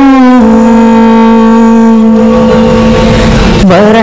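A singer holding one long, steady note in a daf muttu chant, sliding down in pitch near the end as the melody resumes.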